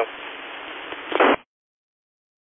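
Radio receiver hiss at the tail of an operator's transmission, with a brief louder burst just before the hiss cuts off suddenly as the receiver's squelch closes.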